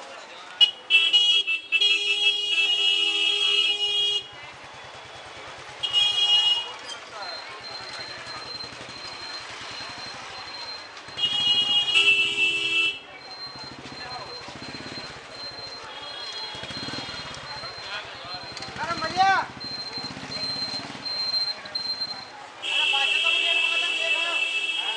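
Vehicle horn honking in a crowded street, four times: a long blast near the start, a short one, another about halfway, and a last one near the end, over steady crowd chatter.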